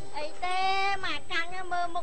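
A woman's high-pitched voice singing short phrases unaccompanied, notes held and sliding up and down, with short breaks between them.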